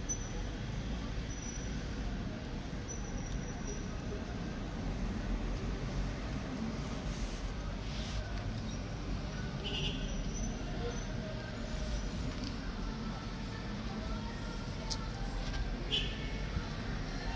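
Steady low background rumble with faint, indistinct voices.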